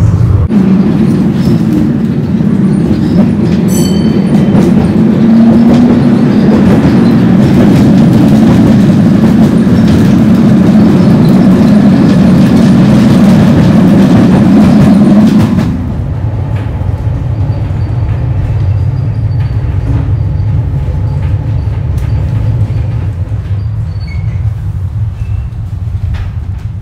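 Wellington Cable Car, a cable-hauled funicular, running on its rails. A loud, steady rumble of wheels on track, echoing inside a tunnel, drops abruptly to a quieter running noise about sixteen seconds in as the car comes out of the tunnel.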